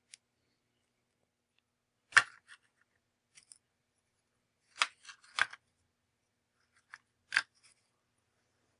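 Small hard varnished paper bracelet pieces clicking and tapping as they are handled and set down on a folded paper tray. There are four sharp clicks, the loudest about two seconds in and the others around five and seven seconds, with fainter ticks between.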